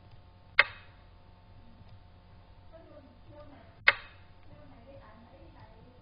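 Two sharp clicks about three seconds apart: the piece-move sound effect of a Chinese chess board program as pieces are placed.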